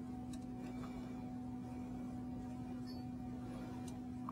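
Quiet room tone carried by a steady low electrical hum, with two faint ticks, one near the start and one near the end.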